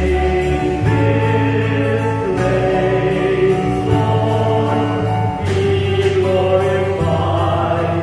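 A group of voices singing a worship song together with instrumental accompaniment: held bass notes that change about once a second under the singing, with a light regular beat.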